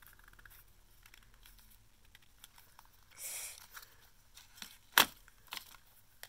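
Small plastic slime case being handled, with faint clicks, a brief rustle about three seconds in, then one sharp plastic click near the end as the case is pulled open.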